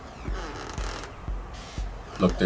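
Four soft low thumps, evenly spaced about twice a second, over a faint hiss.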